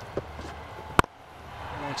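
Cricket bat striking the ball: one sharp crack about a second in, over a low steady background hum.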